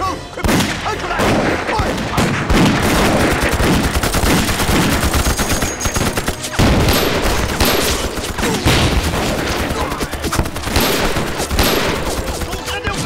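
Dense, continuous battle gunfire: rapid machine-gun bursts mixed with many scattered gunshots, crowding one on another.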